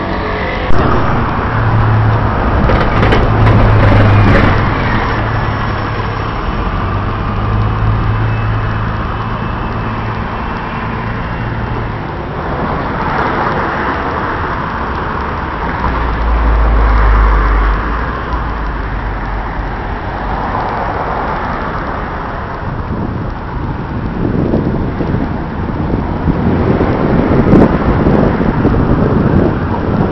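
City street traffic: a steady wash of passing cars and engines, with a low engine hum through the first dozen seconds and a heavier, deeper rumble about sixteen seconds in.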